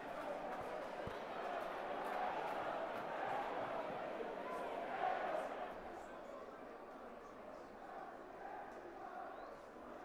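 Stadium crowd at a rugby league match: a steady hubbub of many voices, fuller for the first five or six seconds and then easing off.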